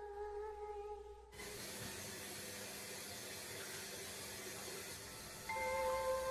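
A steady, even hiss. A held musical tone dies away about a second in, and bell-like music notes come in near the end.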